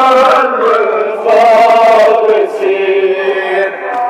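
Men chanting a Kashmiri noha, a Shia mourning lament, in long, drawn-out sung phrases.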